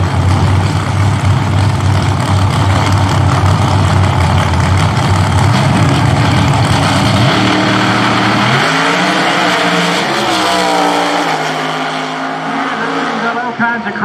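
Pro Outlaw 632 drag cars' 632-cubic-inch V8s running loud and steady on the starting line, then launching about eight seconds in, their engine note climbing in pitch as they pull away down the track and grow fainter.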